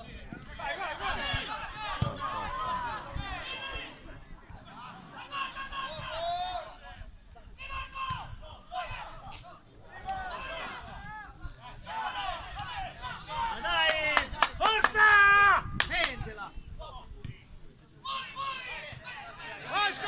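Voices shouting and calling out around a football pitch during play, in short bursts throughout and loudest about fourteen to sixteen seconds in.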